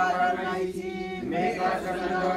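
Congregation chanting together in unison on long held notes, with a brief dip about a second in before the chant picks up again.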